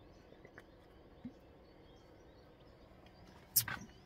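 A man drinking from a can, mostly quiet, with faint bird chirps in the background; a short, sharp exhale-like noise about three and a half seconds in is the loudest sound.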